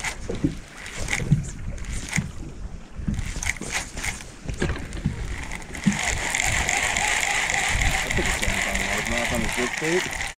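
A baitcasting reel is handled with a few light clicks and knocks, then cranked in a steady whir from about six seconds in, over wind and water noise.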